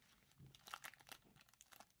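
Faint, irregular crinkling of a foil Pokémon booster pack wrapper as cards are pulled out of it.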